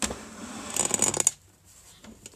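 Handling noise: a second or so of rustling and scraping, ending in a quick run of small clicks, as the phone is moved and she reaches for the sewing machine.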